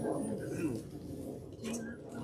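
Indistinct voices of several people talking quietly, with a short held voice-like tone near the end.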